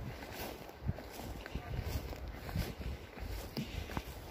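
Footsteps through moss and low shrubby forest undergrowth: irregular soft thuds, with leaves and twigs rustling against the legs.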